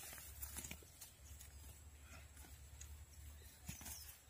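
Near silence: a faint steady low rumble with a few scattered light clicks.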